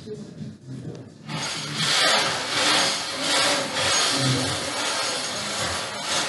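Bingo ball blower running, plastic balls tumbling and rattling in its clear globe as the next ball is drawn; the rattling rush starts about a second in and keeps going, swelling and easing.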